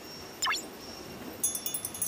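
Like-and-subscribe button sound effects: a quick falling sweep about half a second in, then a short, high, sparkling chime shimmer near the end.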